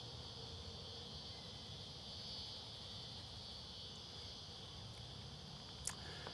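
Faint, steady high-pitched chorus of insects, with a single short click near the end.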